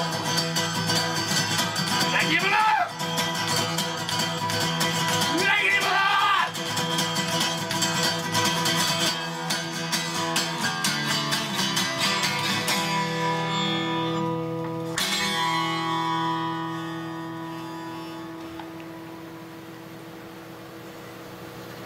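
Acoustic-electric guitar strummed hard and fast, with a voice shouting over it in the first few seconds, ending the song. The strumming stops about twelve seconds in, and a final chord struck about fifteen seconds in rings out and fades.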